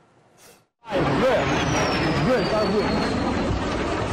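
After a second of near silence, people's voices shouting over a loud rushing noise, with a thin whistle falling steadily in pitch; the sound cuts off abruptly at the end.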